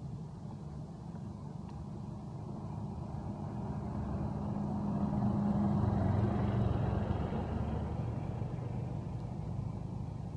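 A motor vehicle running, a low hum that grows louder to a peak a little past the middle and then fades as it passes by.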